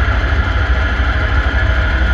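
Live death metal played very loud by a band on stage: low-tuned distorted guitars and bass over fast, dense drumming, heavy in the low end.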